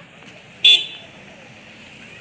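A single short vehicle horn toot about two-thirds of a second in, over a low steady street background.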